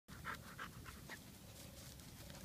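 Heavily pregnant Weimaraner panting a day before whelping, quick breaths about three to four a second, plainest in the first second and then fading.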